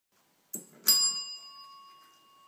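Brass desk bell (service bell) rung by a dog: a light ding about half a second in, then a loud ding just under a second in that rings on and slowly fades. The ring is the dog's signal to be let out of the door.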